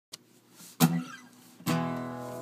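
Acoustic guitar strummed twice, about a second apart; the second chord rings on, opening the song.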